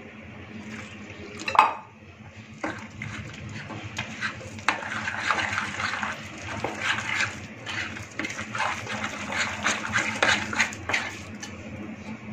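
A hand mixing ragi, rice and wheat flour with curd and water into a thick batter in a glass bowl: irregular wet squishing and small clicks against the glass. There is a short louder knock about a second and a half in.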